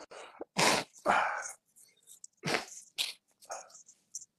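Several short, breathy bursts of air from a person, with no voice in them. The loudest come in the first second and a half, and weaker ones follow a little later.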